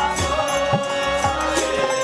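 Indian devotional music: a voice holding a long chanted note over a steady drone, with hand-drum strokes about twice a second.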